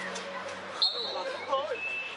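A referee's whistle blown once, a short shrill blast about a second in, signalling that the penalty may be taken, over spectators' chatter.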